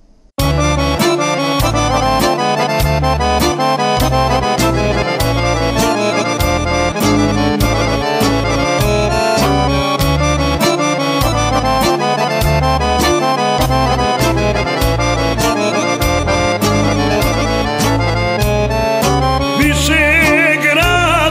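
Instrumental introduction of a Serbian folk song, led by accordion over bass and drums keeping a steady beat of about two strokes a second; it starts abruptly about half a second in, and a man's singing voice comes in right at the end.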